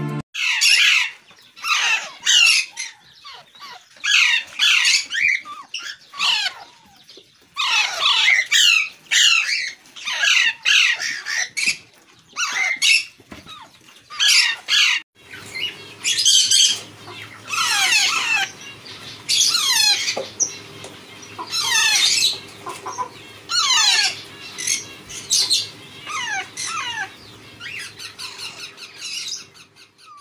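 A brood of Alexandrine parakeet chicks calling in loud, harsh bursts of repeated squawks, a burst every second or so. From about halfway through, a steady low hum lies beneath the calls.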